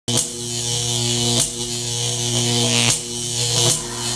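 Electronic glitch buzz sound effect for an animated logo: a steady electric buzz with a hiss of static on top. It starts abruptly and is broken three times by short static crackles.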